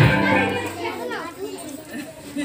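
Recorded dance-song music fades out within the first second, giving way to the chatter of a group of children's voices.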